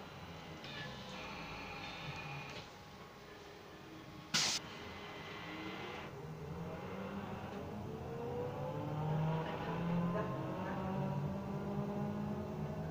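Inside a moving city bus: road and cabin noise with a brief sharp hiss just after four seconds in, then the bus's motor speeding up with a rising whine from about six seconds in.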